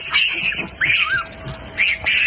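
A large troop of macaques squealing and chattering together, with many high-pitched calls overlapping and a short rising-and-falling squeal about halfway through.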